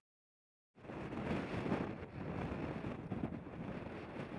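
Brief silence, then strong, gusty wind buffeting the microphone on an exposed headland, with surf breaking in the background.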